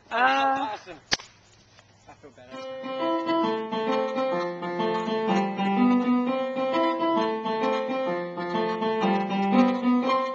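A brief yell in the first second, then, from about two and a half seconds in, two people playing an electronic keyboard together on a piano voice: an even, steady run of notes with several sounding at once.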